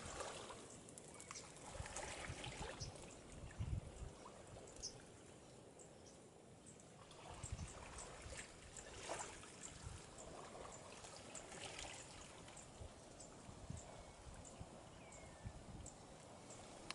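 Faint, gentle water lapping and trickling around mangrove roots at a muddy shoreline, with scattered brief high bird calls and occasional low thumps.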